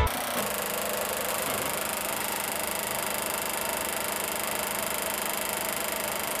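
Film projector running as a steady mechanical whir: a low hum under a fast, even flutter.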